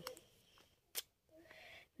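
Near silence: room tone, broken by one short sharp click about a second in.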